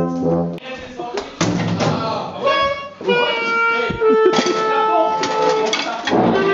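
Brass band playing, with people's voices mixed in; the band's held chords break off about half a second in, leaving voices, knocks and scattered brass notes, with one long held note near the end.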